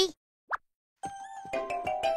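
A quick upward-sliding plop sound effect, then a short cartoon music cue of bright sustained notes starting about a second in.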